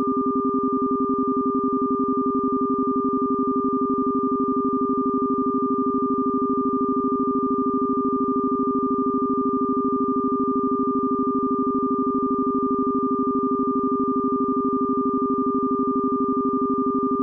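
Steady synthesized tones held unchanging at a few pitches, with a fast, even pulsing in loudness: a binaural-beat or isochronic-tone sound-therapy track.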